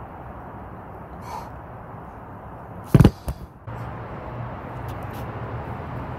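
Two loud metallic clanks about three seconds in, the second a moment after the first, as heavy hex dumbbells are set down at the end of a set. Afterwards a steady low engine hum runs under the outdoor background noise.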